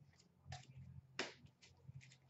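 Hockey trading cards being flicked through by hand: two short, sharp card snaps, about half a second in and a little after a second in, the second louder, over a faint low room hum.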